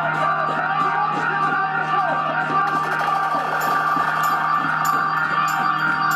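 A drum band playing live, with marching tenor drums beaten with mallets over a dense, sustained layer of tones. In the second half, sharp accents come about twice a second.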